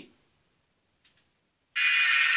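Near silence, then near the end a harsh, steady game-show buzzer sounds, the signal for a wrong guess.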